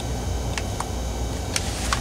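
A few light clicks from pressing a Sony VAIO laptop's power button, checking whether it will power up on battery, over a steady low hum.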